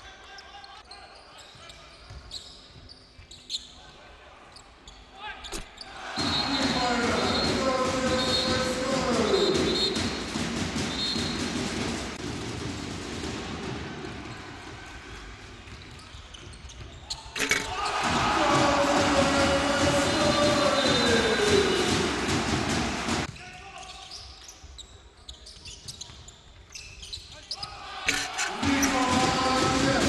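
Basketball game sound in an arena: a ball bouncing on the hardwood and clicks from play on court, with a crowd cheering loudly twice, from about six seconds in and again from about seventeen to twenty-three seconds.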